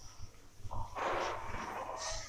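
Whiteboard eraser rubbed firmly across a whiteboard, wiping it clean: a dry rasping swish that sets in under a second in and grows loudest about a second in.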